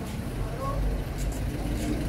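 City street traffic: vehicle engines running as a steady low rumble that swells about a second in.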